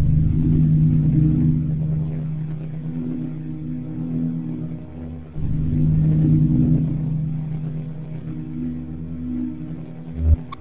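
Warm, low electronic drone of sustained tones, starting abruptly from silence at the opening of a track. It fades a little, then restarts sharply about five and a half seconds in, like a repeating loop.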